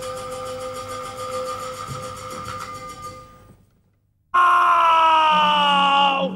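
Teochew opera accompaniment: sustained bowed-string notes fade away over about three seconds, a moment of silence, then a loud note starts suddenly and slides slowly downward in pitch, opening the next section.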